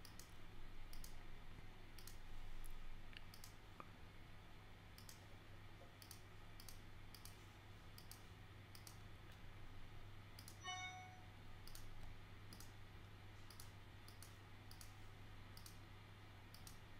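Faint, irregular computer mouse clicks, about one or two a second, as points of a polygonal lasso selection are placed in Photoshop, over a steady low hum.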